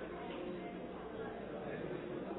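Faint, indistinct murmur of many people talking quietly among themselves in a large council chamber, with no one speaking at the microphone.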